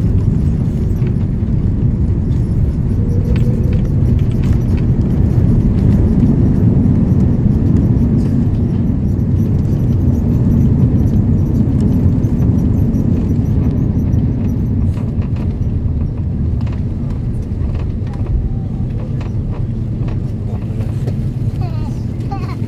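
Cabin noise of an Airbus A330-300 with Rolls-Royce Trent 772 engines rolling out on the runway after a max-braking landing: a loud, steady low rumble of engines and wheels on the runway, easing off over the last several seconds as the aircraft slows.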